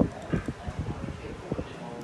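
Laptop keyboard keys being tapped in an irregular run of soft clicks and knocks, as commands are entered.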